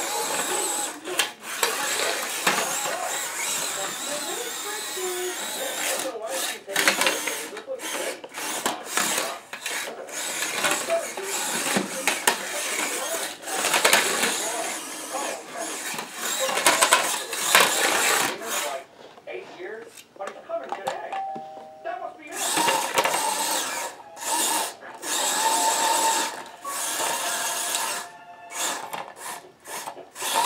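Small electric drive motors of an antweight wedge combat robot whining in repeated stop-start bursts as it drives and turns on a tile floor.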